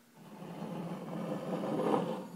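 Rubbing, rustling handling noise from a hand holding a bottle moving right up against the recording device's microphone, swelling over about two seconds.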